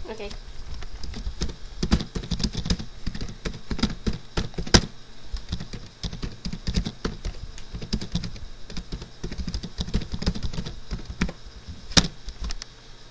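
Irregular clicking and tapping of a computer keyboard close to the microphone, with occasional duller knocks.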